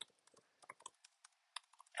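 Faint, irregular clicks of computer keyboard keys being typed, with a short pause a little past halfway.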